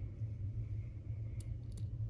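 A steady low hum, with a few faint short clicks in the second half.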